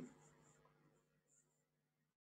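Near silence: only a faint steady hum in a pause between speakers.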